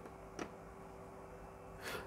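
Quiet room tone with a faint steady hum, one small click about half a second in, and a breath just before the end.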